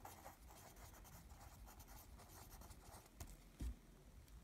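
Faint scratching of a pencil writing on lined notebook paper in short strokes, with a soft low thump near the end.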